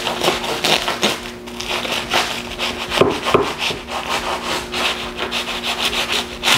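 A long kitchen knife sawing back and forth through a foil-wrapped bagel sandwich on a wooden cutting board: repeated rasping strokes of the blade through crinkling aluminium foil and bread.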